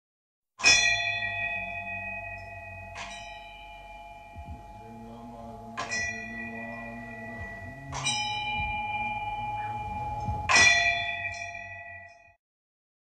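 Bells struck five times at intervals of two to three seconds, each strike ringing on with long sustained tones over a low steady hum. The last strike is one of the loudest.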